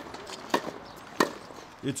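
Tennis ball being hit with a racquet in a practice rally: two sharp pops about two-thirds of a second apart.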